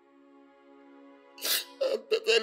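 Soft background music holding a steady chord; about one and a half seconds in, a man's loud sharp sobbing intake of breath, then the start of his crying voice near the end.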